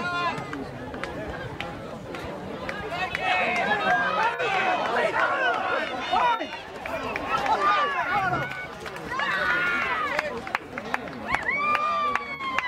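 Several voices shouting and calling out at once from the sideline of a rugby league game. The shouts swell from about three to six seconds in and again near the end.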